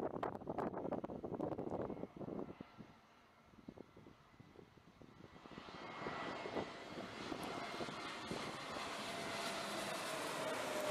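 Wind buffeting the microphone for the first two seconds. Then the hiss of a Vietjet Air Airbus A320-family airliner's jet engines on landing approach, with a faint whine in it, grows steadily louder from about halfway as the plane comes closer.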